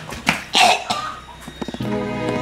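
A woman coughing hard in a few harsh bursts, the loudest about half a second in. Background music comes back near the end.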